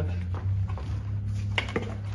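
Vertical milling machine running with a steady low hum just before the cut starts. A few light clicks and knocks of handling come about one and a half seconds in.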